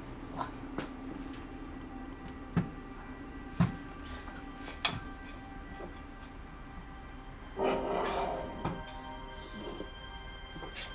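Soft background music of held notes, with three sharp knocks of food pots and containers being set down on a counter, then about a second of plastic-bag rustling.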